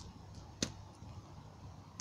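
Bonfire of brush and twigs burning with sparse crackles, one sharp pop just over half a second in and a few fainter ticks, over a faint low steady hum.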